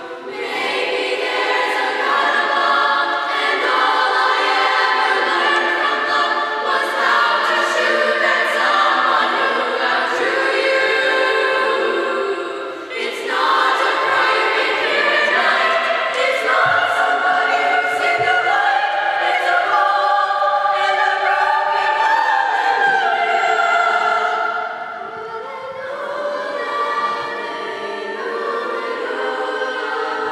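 Middle-school chorus singing a song together, with a short break in the sound about halfway and a softer passage near the end.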